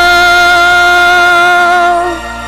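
A male gospel singer holding one long, high closing note into a microphone, steady with a slight waver near the end.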